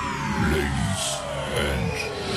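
Aircraft fly-by sound effect: a whine gliding steadily down in pitch.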